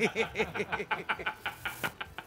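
Men laughing hard, a rapid run of short ha-ha pulses.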